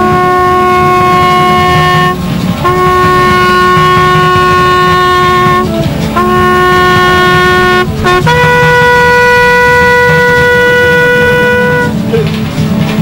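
A solo brass horn, bugle-like, playing a slow call in long held notes: three notes on one lower pitch, each held two to three seconds with short breaks, then a note a fourth higher held about three and a half seconds to near the end.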